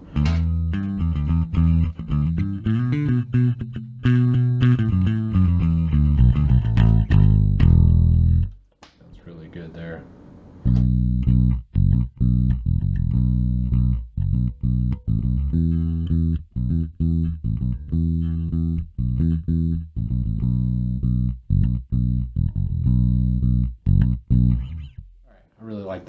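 Rickenbacker-style electric bass with all three humbucker pickups on, played through a Sushi Box FX Dr. Wattson (Hiwatt DR103-style) preamp pedal on a clean setting. A run of held notes lasts about eight seconds and is followed by a short pause. The player then picks a rhythmic riff of short, clipped notes.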